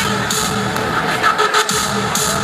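Loud electronic dance music from a live DJ set, played over the sound system of a large hall. About a second and a half in, the deep bass drops out briefly.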